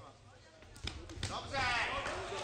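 Two sharp thuds during an MMA bout, about a second in, followed by loud voices calling out.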